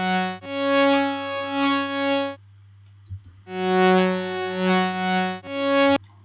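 Logic Pro Alchemy additive synth patch with saw-wave partials playing its two-note phrase twice, with a short gap between: held tones thick with harmonics, the upper harmonics gliding up and down in pitch under an envelope. The saw wave makes it sound messy.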